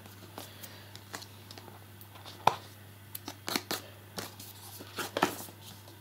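Fingers picking and scraping at sticky security-sticker residue on a cardboard box: faint, scattered scratches and clicks, the sharpest about two and a half seconds in.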